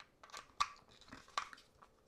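Faint clicks and scrapes of hard plastic as a snap-on colour filter is pressed onto a GoPro's clear plastic dive housing. Two sharper clicks come about half a second and a second and a half in.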